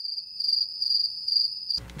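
Crickets chirping: a steady, high, pulsing trill that cuts off suddenly near the end. It stands alone, with the normal background gone, like a dropped-in 'crickets' sound effect marking an awkward silence.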